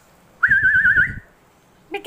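A single whistled note, held for under a second with a quick, even wobble in pitch, over a low rumble.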